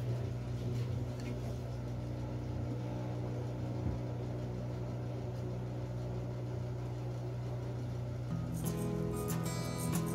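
A steady low mechanical hum, with acoustic guitar music strumming in near the end.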